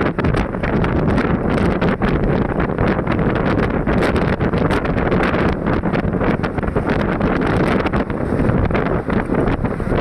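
Wind buffeting the microphone of a vehicle moving at speed, over a steady rush of road and engine noise, loud and unbroken.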